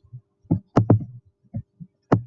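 Computer mouse clicking on the buttons of an on-screen calculator emulator: about six short, irregularly spaced clicks over a faint steady hum.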